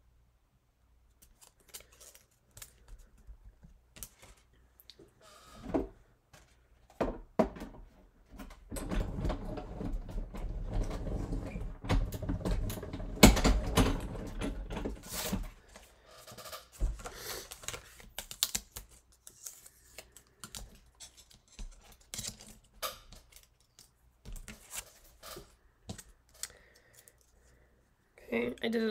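Clicks and rattles of plates and paper being handled. About eight seconds in, a die-cutting machine runs for some seven seconds as the sandwich of plates and die passes through its rollers, with one sharp knock partway that is the loudest sound. More light clicks follow as the plates are taken apart.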